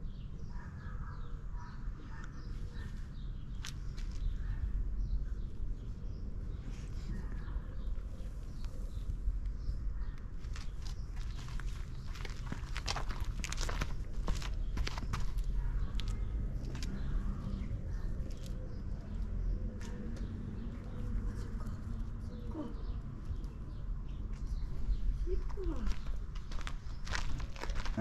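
Scattered crunches, scrapes and rustles in garden gravel and grass, thickest around the middle and again near the end, from a shih tzu puppy nosing and scrabbling about, over a steady low rumble.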